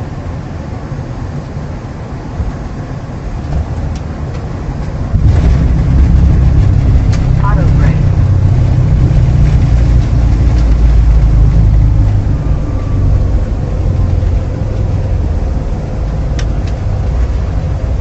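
Flight-deck noise of an Embraer E175 on its landing rollout: a steady rush of air and engines, then about five seconds in a loud low rumble sets in suddenly, holds for about seven seconds and eases.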